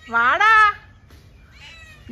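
Tabby cat meowing once, a single call rising in pitch near the start.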